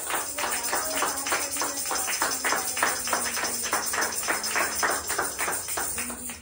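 Hands clapping in a steady rhythm, about three claps a second, with a tambourine's jingles shaken along with them.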